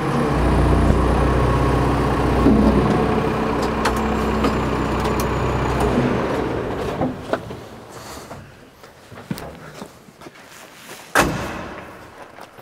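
Telehandler diesel engine running steadily, then shut off about six seconds in. After a few small clicks, a cab door slams shut near the end.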